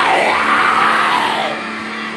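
A young man screaming in harsh screamo style over a rock backing track. The scream lasts about a second and a half, then the band carries on alone.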